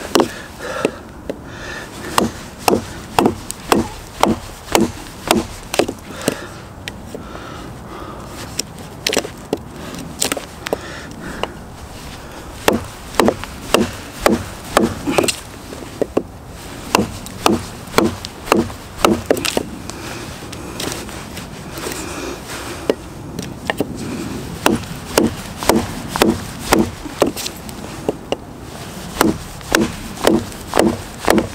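Schrade SCHF37 survival knife, a heavy 6 mm thick carbon-steel blade, chopping into wood: runs of sharp blows about two a second, with short pauses between the runs.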